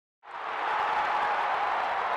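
Steady crowd applause sound effect for an animated logo intro, starting about a quarter of a second in.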